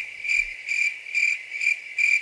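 Cricket chirping sound effect: a high, steady chirp that pulses about three times a second. It is the comic "crickets" gag for dead silence, here meaning that nothing is happening.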